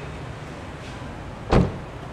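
A car door of a Toyota Camry shut once, a single short thud about one and a half seconds in.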